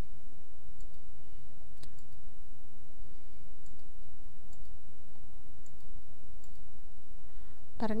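A few faint computer mouse clicks, scattered and separate, over a steady low electrical hum.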